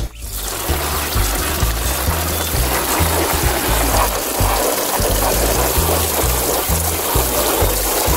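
Water spraying in a steady hiss, over background music with a stepping bass line.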